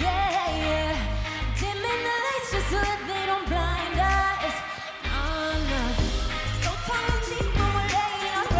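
Live pop song: a woman's lead vocal sung into a handheld microphone over a pulsing, deep electronic bass beat.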